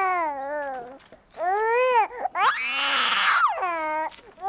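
Swaddled infant crying in several long wails with short breaks between them, the pitch arching up and sliding down in each.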